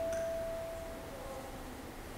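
A single sustained musical note, one steady pure tone, held and then fading out about a second in.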